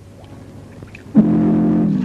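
A loud, low horn blast of several steady tones at once starts suddenly a little over a second in and holds.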